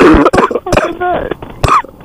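A man coughing hard and clearing his throat, several harsh coughs with a little voice between them.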